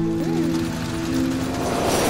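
Cartoon sound effect of a flying machine: a steady mechanical whirring and clattering, over held musical tones.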